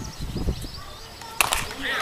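A softball bat hitting the ball once with a sharp crack about one and a half seconds in, followed by players and spectators starting to shout.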